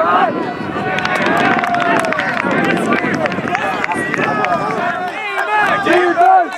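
A sideline crowd of spectators and players shouting and cheering over one another, many voices at once with some sharp claps, as a point is scored.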